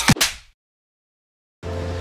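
A voice clip ends with a couple of sharp clicks, then about a second of dead silence at an edit. Outdoor ambience with a low steady hum and wind noise on the microphone starts near the end.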